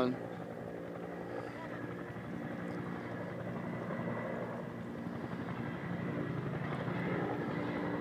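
Firefighting helicopter hovering at a distance, its rotors giving a steady hum with an even stack of tones that grows a little louder in the second half.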